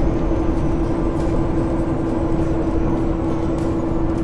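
Steady engine and road noise inside the cab of a semi-truck under way, with one constant hum.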